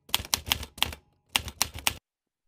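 A quick run of sharp, keystroke-like clicks, about a dozen in two bursts, with a short pause near the middle.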